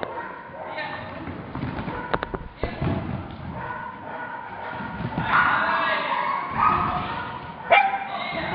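A dog barking among people's voices, with a few sharp knocks and a loud thud near the end.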